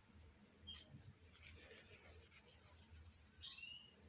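Near silence: room tone with a faint low hum and two faint high chirps, one about a second in and one near the end.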